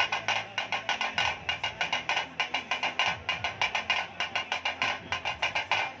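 Fast, steady drumming: sharp, high-pitched strikes about six times a second, with little deep bass.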